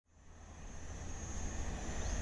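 A car approaching on the road, its tyre and engine noise growing steadily louder, with a low rumble.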